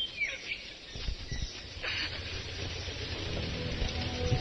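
Film soundtrack outdoor ambience with a few short bird chirps in the first half second. A low steady hum with several held tones builds from about three seconds in.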